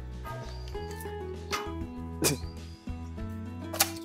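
An emu's beak knocking on the ice in a frozen water dish: four sharp clicks, the last and loudest near the end, over background music.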